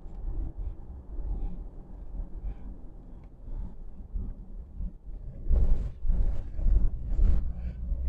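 Low, steady road rumble inside a moving car's cabin. In the second half, several loud rustling knocks as the phone is handled against the microphone.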